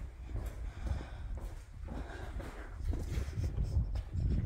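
Footsteps on concrete as a person walks out of a garage onto the driveway, with wind rumbling on the phone's microphone, heavier near the end.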